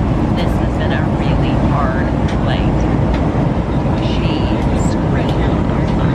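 Jet airliner heard from inside the cabin: a loud, steady roar of engines and rushing air, with faint voices underneath.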